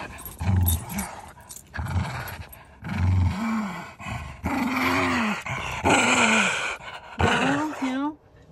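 Small dog growling and grumbling while being rubbed down with a cloth, over the rustle of fabric on its snowy fur. Several drawn-out growls, rising and falling, come in the second half.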